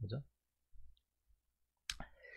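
A computer mouse clicking: a faint click a little before one second in, then one sharp click near the end, against quiet room tone.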